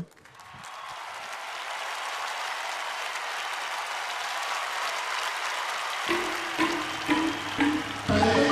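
Studio audience applause that swells over the first seconds, with music coming in about six seconds in.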